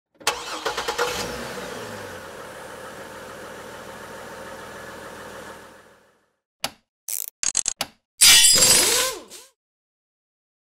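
Intro sound effects: an engine starting with a burst of clicks and then running steadily, fading out about six seconds in. A few short sharp sounds follow, then a loud noisy whoosh ending in a falling tone.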